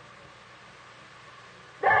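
A pause in the sermon filled only with the steady background hiss of an old recording; a man's preaching voice starts again near the end.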